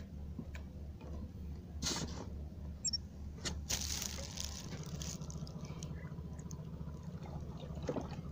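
Water splashing in two bursts, a short one about two seconds in and a longer one around four seconds in, over a steady low hum.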